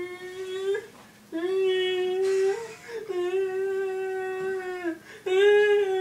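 A person's voice holding long, steady notes, one after another with short breaks between them, each a second or two long.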